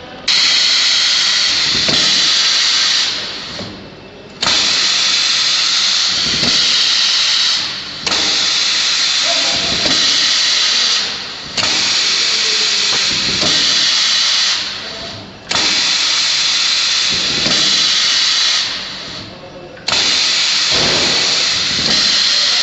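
Pneumatic chisel mortiser cycling on compressed air: a loud burst of air hiss starts suddenly about every four seconds, runs for about three seconds and fades, six times over, with a faint knock inside each burst.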